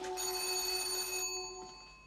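Electric doorbell ringing in one burst of about a second, then dying away, under the tail of fading background music.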